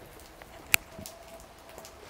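Quiet background hiss with a single sharp click about three quarters of a second in.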